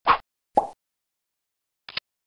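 Stock cartoon sound effects: two short plops about half a second apart, then a third, briefer one near the end.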